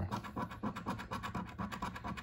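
A coin scratching the latex coating off a paper lottery scratch-off ticket in quick, rapid strokes.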